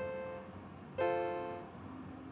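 Piano-like notes played by hand on a small electronic keyboard: one note sounds at the start, then a chord is struck about a second in and fades away over the following second.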